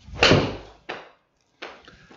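Golf club striking a ball off a hitting mat: one sharp crack about a quarter second in, followed by two fainter knocks about a second and a second and a half in.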